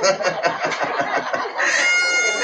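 Audience laughter in short choppy bursts, then near the end a trumpet blown by a child in the crowd comes in, holding one steady note.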